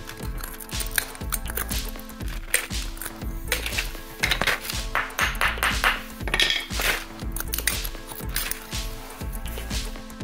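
Hammer striking and cracking glassy borax slag off smelted galena buttons: repeated irregular sharp strikes with clinking chips, over background music.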